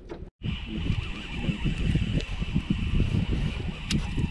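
Wind buffeting the microphone in the open boat: an uneven low rumble over a steady hiss. It starts after a brief moment of silence near the start.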